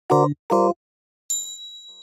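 Title-card jingle: two short, clipped chord stabs in a quick even rhythm, a brief silence, then a high, bright ding that rings on and slowly fades.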